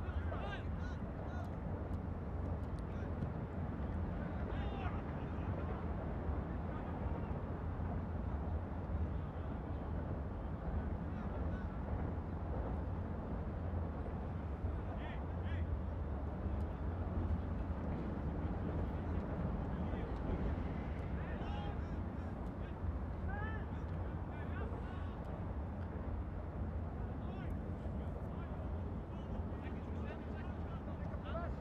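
Soccer pitch ambience: players' distant shouts and calls over a steady low rumble, with scattered short high calls.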